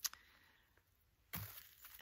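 A quiet pause in a woman's speech: a single sharp mouth click at the start, then a short, quick in-breath about a second and a half in.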